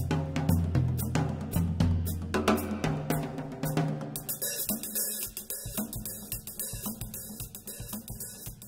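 Drum-kit music with busy snare, bass-drum and cymbal hits over low held notes that change in steps. About halfway through the low notes drop out and the playing thins and fades down.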